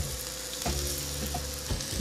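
Korean spring onion pancake batter frying in an oiled pan: a steady hiss of sizzling as it is spread out with chopsticks.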